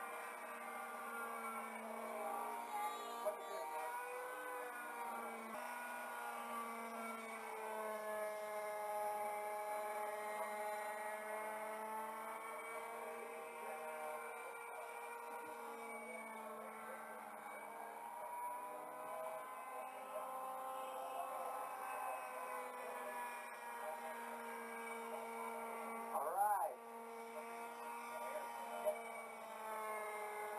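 Scratch-built radio-controlled model helicopter's engine running in flight, its pitch drifting slowly up and down, through muffled VHS-tape audio. A brief louder rising-and-falling sound comes shortly before the end.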